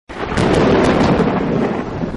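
A loud thunderclap that starts abruptly, crackles sharply through the first second, then rolls on as a slightly fading rumble.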